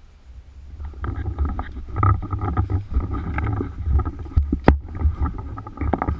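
Rumble and scuffing of a body-worn GoPro action camera as the player moves behind cover, building about a second in, with one sharp crack near the end.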